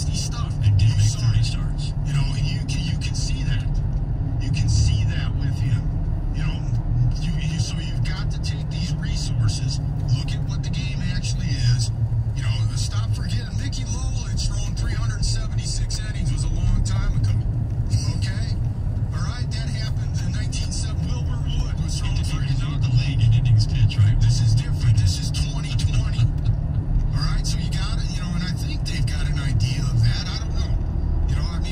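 Car cabin noise while driving: a steady low rumble of engine and tyres on the road, with indistinct speech underneath.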